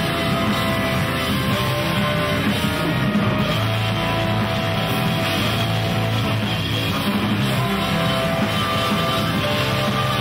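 Heavy rock band playing loud and steady, with electric guitars and a drum kit.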